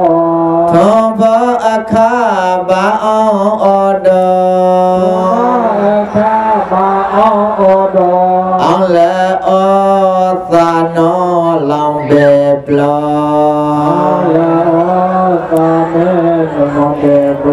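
Karen Buddhist devotional chant sung with long, wavering melodic lines over a steady low held drone.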